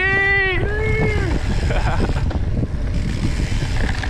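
A rider's long two-part shout in the first second or so, over steady wind rumble on the camera microphone and the rolling noise of mountain-bike tyres on a dirt trail.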